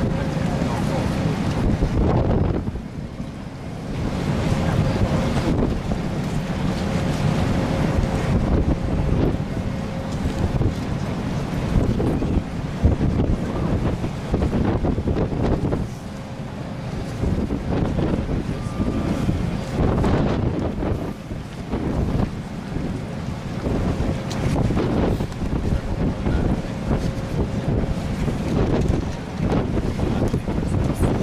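Wind blowing hard on the microphone: a loud, gusty low rumble that rises and falls, with a faint steady hum in the first third and again near the end.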